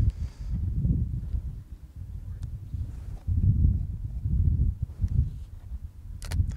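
Wind buffeting the microphone: a low, irregular rumble that swells and fades in gusts, with a couple of faint clicks.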